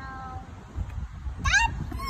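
Two short high-pitched squeaks: a brief steady one at the start and a rising one about one and a half seconds in.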